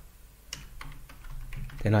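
Typing on a computer keyboard: a quick run of separate keystrokes entering a short terminal command.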